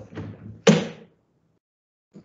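A few soft knocks, then one loud sharp thud about two-thirds of a second in: handling noise as someone moves right up against a laptop's webcam and microphone.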